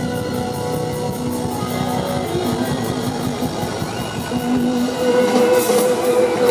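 Live rock band playing, with electric guitar to the fore and held notes ringing over the band; the music gets a little louder about five seconds in.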